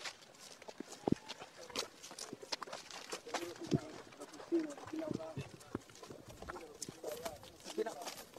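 A group walking on pavement: irregular footsteps and sharp clicks, with faint, indistinct voices in the background.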